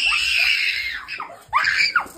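Young girls screaming: one long high-pitched scream lasting about a second, then a second, shorter scream about a second and a half in.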